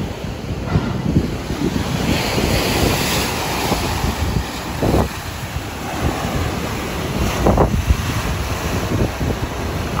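Sea waves washing and breaking on a rocky shore, with wind buffeting the microphone; two waves surge louder, about five and seven and a half seconds in.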